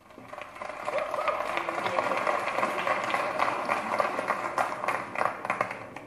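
Audience applauding: a dense patter of many hands clapping that swells over the first second, holds, and dies away near the end.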